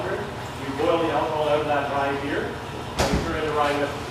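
People talking, with a single sharp bang about three seconds in.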